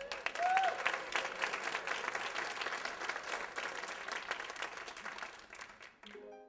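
Theatre audience applauding at the end of a number, with one short whoop about half a second in; the clapping thins out and fades near the end.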